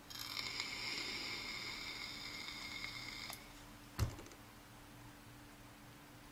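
Lithe sub-ohm vape tank hissing with a high whistle as air is drawn through its small airflow holes during a steady inhale of about three seconds, a draw described as noisy. A single sharp knock follows about four seconds in.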